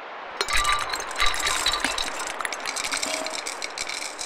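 Sound-design effect: a hiss gives way, about half a second in, to a dense flurry of small glassy clinks and ticks with short bright pings. The loudest hits come near the start of the flurry and just after a second in.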